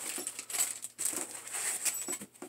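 Packaging being handled: plastic and foam packing rustling and crinkling in short irregular bursts, with light clicks, and a brief pause about a second in.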